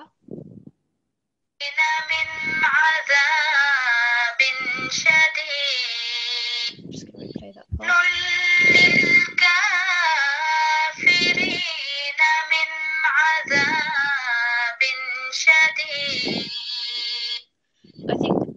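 Recorded Quran recitation played back: one voice chanting Arabic verses in a melodic tarteel style, with long held and gliding notes. It starts about a second and a half in, pauses briefly near the middle, and stops just before the end.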